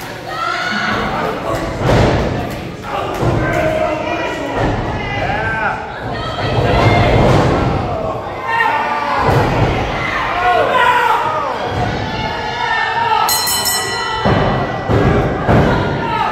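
Wrestlers' bodies hitting the wrestling ring's canvas-covered mat with heavy thuds several times, amid shouting voices.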